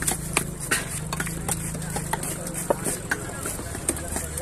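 Large knife knocking on a wooden log chopping block as it cuts seer fish (kingfish) steaks into chunks, in irregular knocks a few each second. A steady low hum, like an idling engine, runs beneath it and fades about three seconds in, with market voices in the background.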